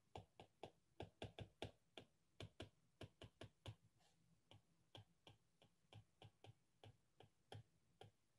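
Faint, irregular clicks of a stylus tapping and stroking on a tablet screen while words are handwritten, several clicks a second.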